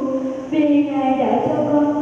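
A nun chanting a prayer into a microphone, her voice held on long, level notes, with a short break about half a second in.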